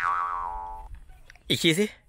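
Cartoon-style 'boing' sound effect: a twangy tone with a wobbling pitch that fades away about a second in.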